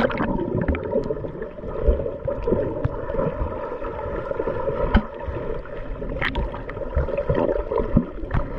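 Muffled underwater rumble and gurgling of sea water around a submerged action camera as the swimmer moves, dull and low with little treble. A couple of sharp clicks cut through, one about five seconds in and another a little after six.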